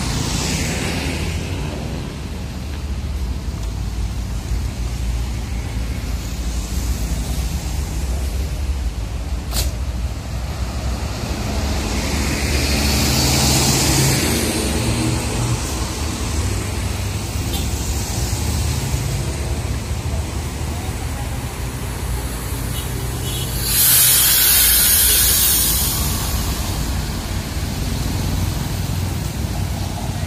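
Large intercity coach's diesel engine idling at the kerb, a steady low rumble under passing road traffic. There is a hiss a little before halfway, and a loud burst of compressed-air hiss about 24 s in as the coach's air system vents before it pulls away.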